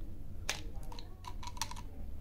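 Plastic flip-top lid of a chewing-gum tube being pushed open by hand: one sharp click about half a second in, then a few lighter clicks.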